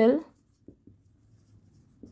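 Faint strokes of a felt-tip marker writing on a whiteboard, with a couple of light ticks about a second in.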